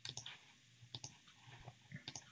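A few faint, scattered clicks in a near-silent pause.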